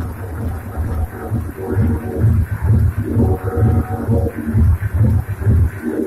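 Loud live techno from hardware drum machines and synths: a heavy bass pulse repeating two to three times a second under synth tones, with the bass dropping out just before the end.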